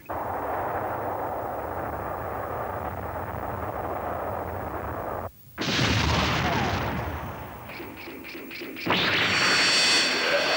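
Cartoon sound effects: a steady rushing noise for about five seconds, cut off by a brief gap. Then comes a loud explosion blast that fades away, and near the end a second loud, sustained blast.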